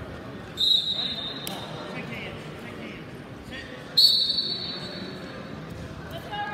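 Referee's whistle blown twice in a gym: a shrill, steady blast about half a second in lasting nearly a second, and a louder, longer one about four seconds in, over the murmur of the crowd.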